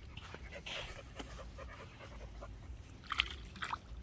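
Light splashing and wet clicks of shallow lake water being disturbed at the shore by a dog's muzzle and paws and a child's hands, with two louder splashes a little after three seconds in, over a low steady rumble.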